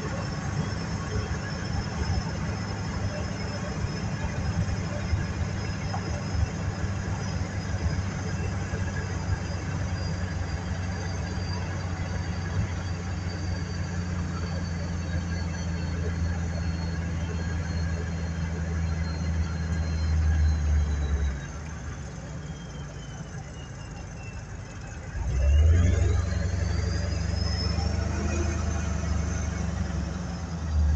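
Car engine and road noise from inside the cabin: a steady low drone with a faint high whine that slowly drops in pitch. About 21 seconds in the drone fades. Near 25 seconds it comes back louder and the whine climbs quickly, as the car speeds up again.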